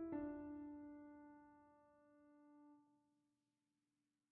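Background piano music: a chord struck just before this moment rings and fades away over about three seconds, then silence near the end.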